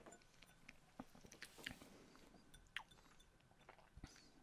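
Near silence with faint mouth sounds from sipping whisky: small sips, tongue and lip clicks as the dram is held and tasted.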